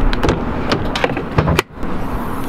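A run of sharp clicks and knocks from an Audi S3's door latch and bodywork as the door handle is pulled and the door and hood are opened, with a louder knock about one and a half seconds in.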